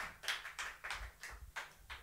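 Several faint, sharp taps at uneven intervals, thinning out and growing quieter toward the end.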